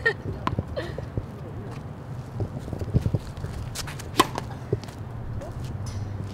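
A tennis racket strikes the ball on a serve about four seconds in: one sharp crack with a brief ring from the strings, the loudest sound here. Lighter taps and scuffs on the hard court come before it.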